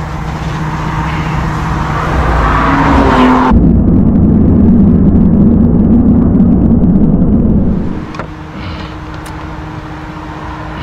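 Road traffic passing close by. A loud, low rumble builds over about three seconds, stays loud and ends abruptly about eight seconds in. Under it is the steady hum of an idling diesel engine.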